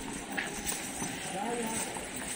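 Horse's hooves clip-clopping at a walk on a paved path, with people talking faintly nearby.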